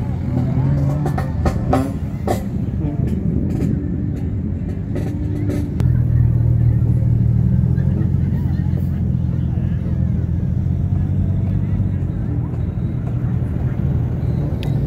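A motor vehicle's engine running steadily with a low hum, growing stronger about six seconds in and easing again near the end, with a few sharp knocks in the first couple of seconds.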